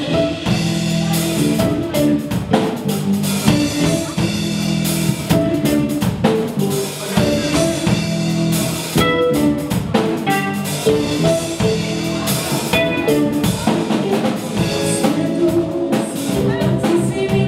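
Live soul band playing, with the drum kit and cymbals to the fore over guitar and keyboard, in a poor-quality live recording.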